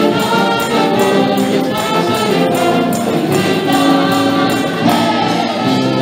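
A worship team of women singing a Spanish praise song together into microphones, backed by a band with a steady percussion beat.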